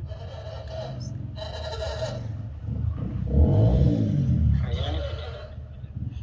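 A muffled, faint voice of a mobile phone call, in two stretches, over a steady low rumble.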